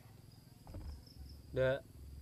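Faint, steady chirring of crickets. A single short vocal sound from a man comes about one and a half seconds in.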